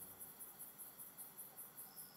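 Crickets chirping faintly in a quick, even, high-pitched pulse, about five chirps a second.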